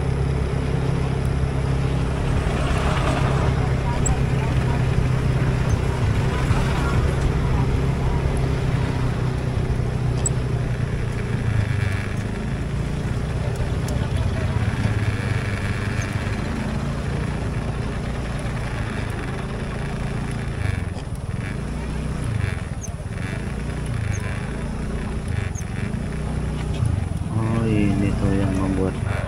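Motorcycle engine running at a steady pace for the first half, then dropping to lower, uneven revs as the bike slows in stop-and-go traffic.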